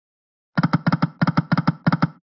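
Reel-spin sound effect of the EGT Shining Crown slot game: after about half a second of silence, a quick, even run of short pitched ticks, about seven a second, while the reels spin.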